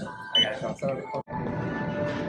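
A short, high beep from a handheld barcode scanner ringing up an item, among voices. About a second in the sound cuts off sharply, and steady background music follows.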